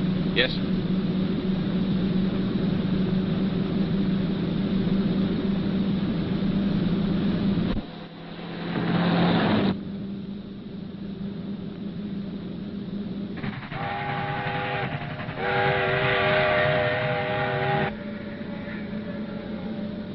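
A car engine running steadily at speed. About eight seconds in comes a swelling rush of noise, then a train whistle sounds twice, a chord of several steady tones, the second blast longer.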